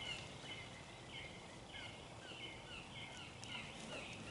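Faint outdoor chirping, a short call with a falling glide repeated evenly about twice a second.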